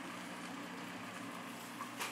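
Steady low hum with a faint even hiss from an aquarium air pump running, pushing air through the tubing into a brine shrimp hatching bottle.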